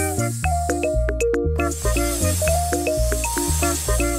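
Upbeat background music with a steady beat, bouncy bass notes and short melody notes, with a hissing sound laid over it at the start and again from about halfway through.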